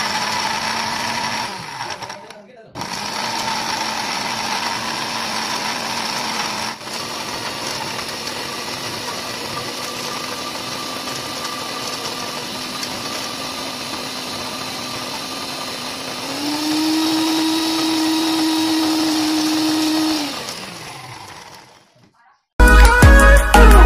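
Electric blender pureeing fresh pineapple pieces into a pulp. The motor cuts out briefly about two seconds in and restarts, then runs steadily. Near the end it gets louder with a steady hum for a few seconds, then winds down and stops.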